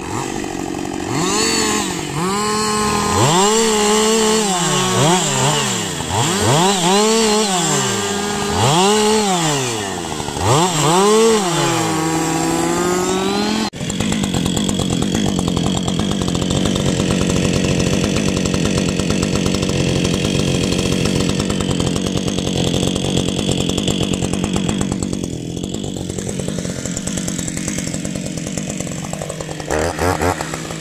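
Two-stroke chainsaw engine revved up and down again and again, its pitch rising and falling with each blip of the throttle. About halfway through it cuts off abruptly, and a chainsaw is heard running at a steady speed.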